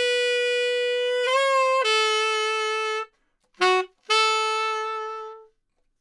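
Unaccompanied tenor saxophone playing a slow phrase of held notes. A long note scoops up in pitch about a second in and stops about three seconds in; a short lower note follows, then a final long note that fades away.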